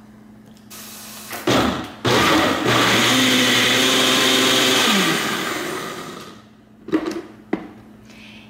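Ninja personal blender's motor whirring for about three seconds, blending frozen berries, banana, ice and nut milk. It starts after a knock, then winds down with a falling pitch. Two sharp plastic clicks near the end.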